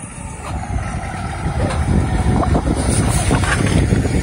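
Diesel engine and tyres of a Kenworth W900 tank truck, a low rumble that grows louder over the first couple of seconds as the truck approaches and then passes close by.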